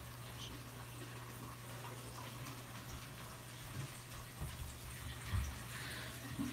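Faint, steady low hum with a light wash of running water, typical of a saltwater aquarium's pumps circulating the tank water. There are a couple of soft low thumps in the second half.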